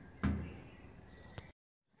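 The hood of a Napoleon gas grill being shut with a single thud, followed by a faint click a second later.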